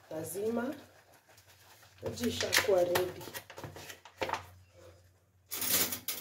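A few untranscribed spoken words, then, near the end, a short loud rasp of a plastic pouch of baobab fruit powder being opened.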